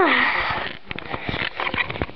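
A voice sliding down in pitch at the start, running into a long breathy hiss or exhale, followed by scattered knocks and bumps.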